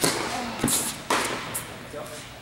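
Tennis ball being hit back and forth on an indoor hard court: sharp racket-and-ball strikes about half a second and a second in, echoing in the hall, with a short vocal sound from a player.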